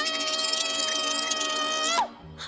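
A young woman's long, high-pitched scream, held at one steady pitch for about two seconds, rising into it at the start and falling off sharply at the end.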